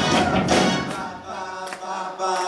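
Live rock band playing with group vocal harmonies. About a second in, the drums and bass drop out, leaving held harmony voices.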